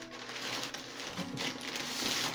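Brown packing paper rustling and crinkling as a hand rummages in a cardboard box.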